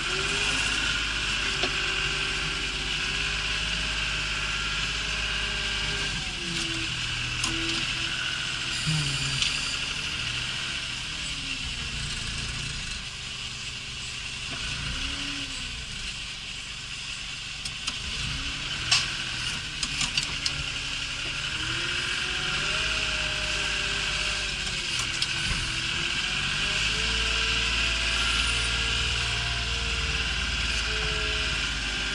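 Diesel engine of a front loader working, heard from inside the cab, its pitch rising and falling again and again as the bale grab lifts and carries a wrapped hay bale. A few sharp clicks come about two-thirds of the way through.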